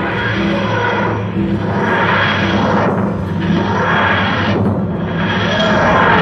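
The TARDIS materialisation sound effect, rising and fading in repeated swells about every two seconds over a steady low drone as the TARDIS lands.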